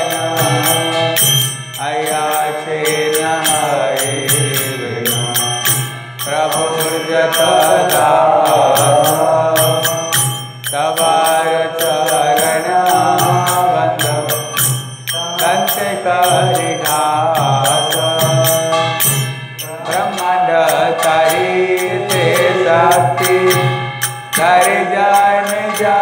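Devotional Vaishnava chanting (kirtan) sung in repeating phrases of about four to five seconds, with a brief dip between each, over a steady low drone and a regular clinking beat.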